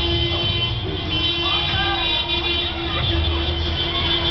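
Car traffic on a crowded street: engines running, a long steady tone through most of it, and people's voices and music mixed in.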